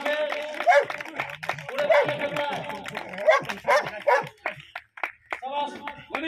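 A dog barking several times amid people's voices, with sharp claps throughout.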